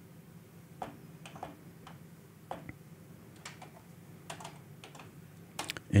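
The plastic buttons of an Akai MPC2000XL being pressed to type in a sample name: about a dozen light clicks at irregular intervals.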